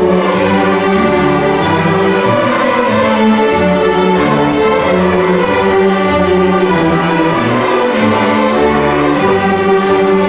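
A school string orchestra of violins, violas, cellos and basses playing together, with sustained bowed notes that change every second or so over a low bass line.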